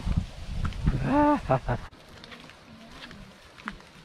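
A single short call from a person about a second in, rising and then falling in pitch, heard over a low rumble. After a sudden cut near the middle it gives way to a quieter outdoor background with faint steps on a dirt trail.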